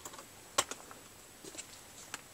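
Light clicks and taps of a plastic disc case being handled and set down, the sharpest about half a second in and a few smaller ones near the end.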